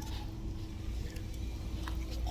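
Steady low background hum with a faint steady tone running through it, and a few faint clicks.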